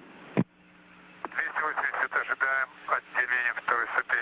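Voice communication over a narrow-band radio loop: a click about half a second in, faint hiss and a steady low hum, then a voice speaking from about a second and a half in.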